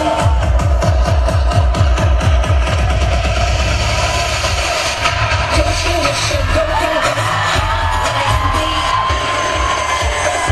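Loud electronic dance track played over a stage sound system, with a heavy, fast bass beat. The beat tightens into a rapid roll about four seconds in, and a sliding melody line comes in a couple of seconds later.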